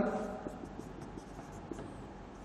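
Marker pen writing on a whiteboard: a quiet run of short scratchy strokes as letters are formed.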